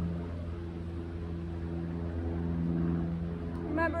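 A steady low drone made of several held tones, without a break.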